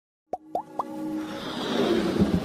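Three short upward-sliding bloops about a quarter second apart, each a little higher than the last, followed by a whoosh that swells louder toward the end: the sound effects of an animated logo intro.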